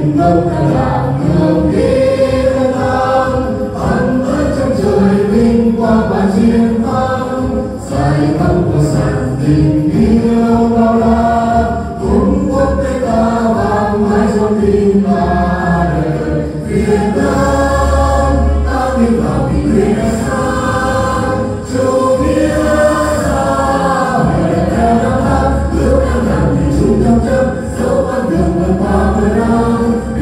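A group of singers performing a Vietnamese song together, voices carried on microphones over backing music.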